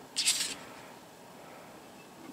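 A brief rustle of the paper drilling template being handled and lifted off the mounting plate, about a quarter of a second in, then only quiet room background.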